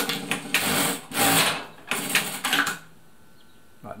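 Siruba DL7200 industrial needle-feed lockstitch sewing machine stitching through fabric in a few short loud runs, then stopping nearly three seconds in.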